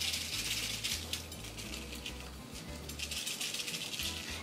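Dried red chile pod crackling as it is pulled apart and handled, with its loose seeds rattling inside: a sign that seeds are still in the pod. Soft background music with a stepping bass line runs underneath.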